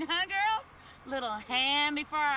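Women laughing in several high-pitched outbursts, with a short pause partway through.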